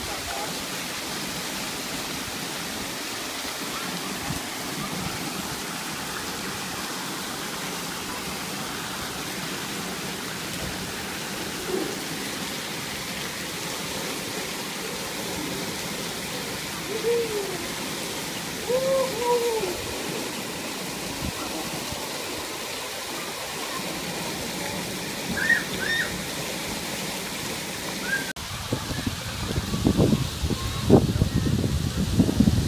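Steady rush of water pouring and splashing from a children's water-play structure into a shallow splash pool, with a few short distant children's calls over it. It cuts off abruptly near the end.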